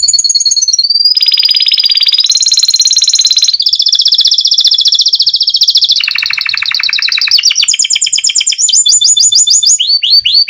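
Domestic canary singing loudly: a string of rapid trills, each a fast run of one repeated high note held for a second or two before it switches to another pitch, with a brief steady whistled note near the start.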